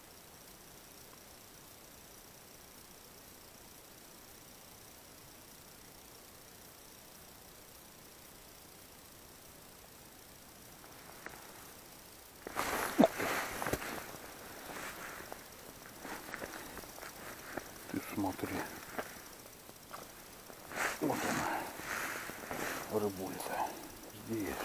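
A faint, steady hiss, then from about halfway close rustling, clicks and knocks as fishing line is hauled up by hand and a silver bream is landed and handled over the ice hole, with the loudest knock just after the sounds begin.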